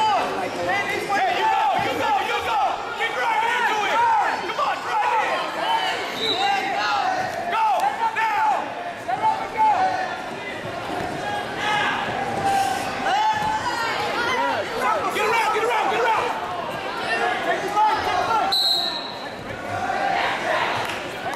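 Many voices shouting and yelling from a gym crowd and coaches during a wrestling match, echoing in a large hall, with occasional thuds of the wrestlers on the mat. A short, high referee's whistle sounds near the end.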